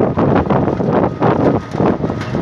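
Wind buffeting the microphone: a loud, rushing noise that surges and dips unevenly.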